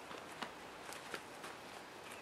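Quiet background with about three soft, faint clicks scattered across the pause.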